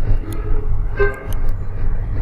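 Steady low rumble of background traffic, with a short horn-like toot about a second in and a few faint clicks.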